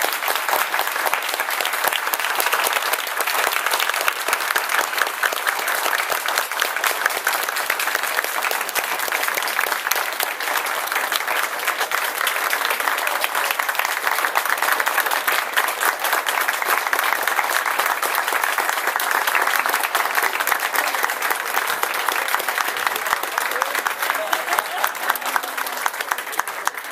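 Audience applauding, a steady crowd of many hands clapping without pause, with some voices mixed in.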